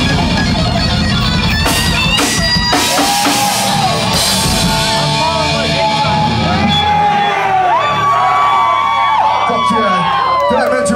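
A live metal band with distorted guitars and drums plays the closing bars of a song. About three seconds in the full band thins out, leaving long held high notes over a ringing low chord, with some shouting, as the song ends.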